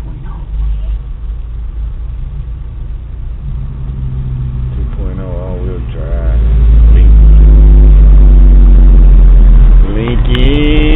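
Vehicle engine idling in traffic, then pulling away and accelerating, its pitch rising a little. A very loud low rumble fills the last three seconds or so as it gathers speed.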